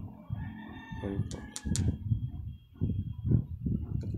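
A faint, drawn-out animal call held for about a second and a half in the background, with three sharp clicks near the middle as small stones are handled.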